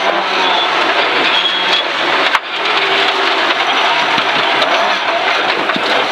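Rally car engine running hard at speed, heard from inside the cabin, with steady noise from the tyres on the gravel. A sharp knock comes a little over two seconds in, followed by a brief dip in loudness.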